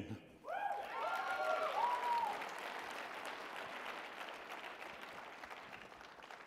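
Audience applauding in a large hall, with a few voices whooping or calling out in the first two seconds. The clapping then thins and fades away toward the end.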